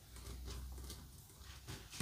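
Quiet room with a faint low rumble, and light clicks of small plastic LEGO pieces being handled and set down on the table near the end.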